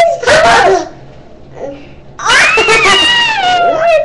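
Children shrieking at the top of their voices: a short loud shriek at the start, then a long high-pitched one from about halfway that slowly falls in pitch.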